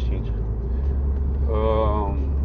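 Steady low engine and road drone inside the cabin of a VW Golf Mk4 on the move. A short drawn-out voice sound comes in near the end.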